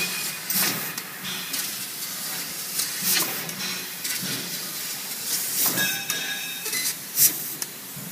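500 W fiber laser cutting machine cutting 1 mm mild steel sheet: a steady hiss from the cutting head, broken about once a second by short, sharp blasts of hiss as the beam cuts and pierces.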